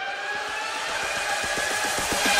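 Channel intro sound effect: a sudden burst of static-like hiss with several steady tones slowly drifting lower, leading into electronic music.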